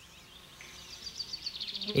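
Faint nature ambience of high-pitched insect chirping, with a rapid pulsed trill that grows louder over the second half.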